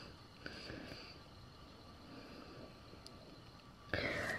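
Quiet room with faint handling of a plastic CD jewel case: a couple of light clicks, then a louder rustle near the end as the case is moved.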